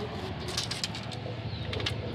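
A pigeon cooing, with a few light clicks about halfway in and again near the end.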